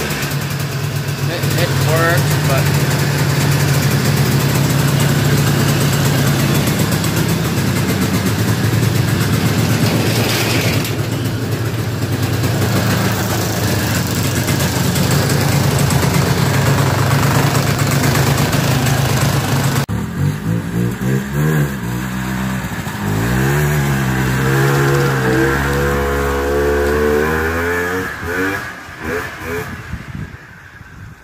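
A 1979 Yamaha Enticer 250's air-cooled single-cylinder two-stroke engine, running on choke, runs steadily for about twenty seconds. It is then revved up and down again and again as the snowmobile moves off, and fades near the end.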